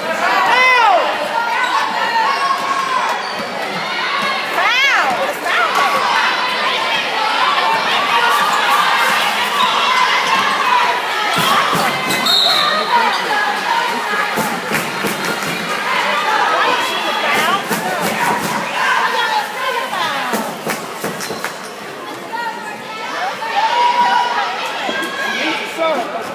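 Basketball being dribbled on a hardwood gym floor, with a quick run of bounces in the middle, and sneakers squeaking twice near the start, over a steady murmur and shouts from the crowd.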